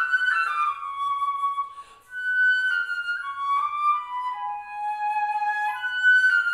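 Eastman EFL210 silver-plated student flute played solo: a legato classical melody of sustained notes, with a short breath break about two seconds in.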